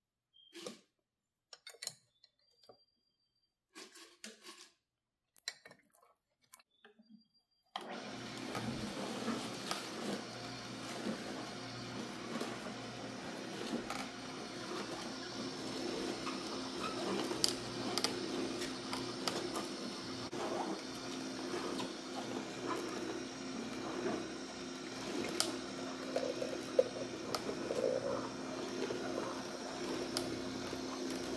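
Vertical slow juicer switched on about eight seconds in. Its motor runs with a steady hum while the auger crushes and squeezes spinach and cucumber, with frequent crackles. Before it starts there are only a few faint clicks and knocks.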